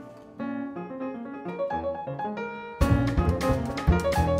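Steinway grand piano playing a sparse solo jazz phrase, note by note. About three seconds in, the drum kit comes in loudly with cymbals and heavy low hits, and the band groove picks up.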